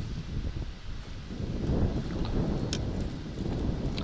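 Wind buffeting the microphone: a low, uneven rush of noise, with one faint click about two-thirds of the way through.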